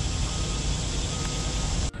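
Steady outdoor background rush with no distinct event, and a faint high tone sounding briefly about twice. The rush stops abruptly just before the end.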